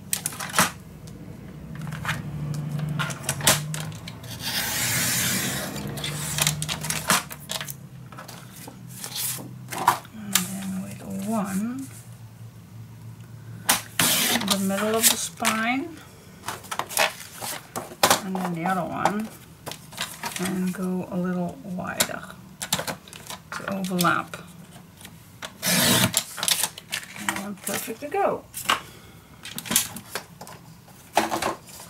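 Sliding paper trimmer cutting black cardstock: a swishing cut of about two seconds a few seconds in and another near the end, among clicks and rustles of the trimmer and paper being handled. A woman's voice sounds softly at intervals without clear words.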